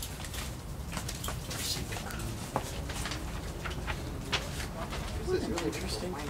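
Sheets of printed paper being handled and rustled, with scattered soft clicks over a steady low background rumble. A short pitched murmur comes in near the end.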